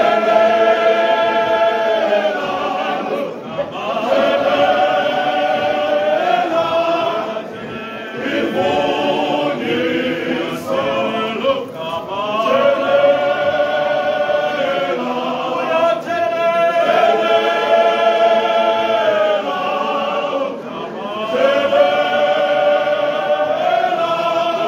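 Male voice choir singing unaccompanied in harmony, long chords held in phrases of a few seconds with short breaths between them.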